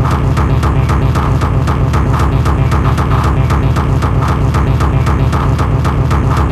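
Instrumental electronic dance music performed on an Amiga 500 computer. It has a fast, steady beat over a heavy bass, with a sustained higher tone.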